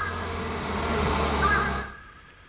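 Film soundtrack at a scene change: a rush of noise over a low hum that swells and then fades out just before the end, with a faint held music tone under it.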